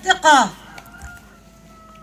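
A rooster crowing, its call falling in pitch and ending about half a second in. A faint steady tone follows.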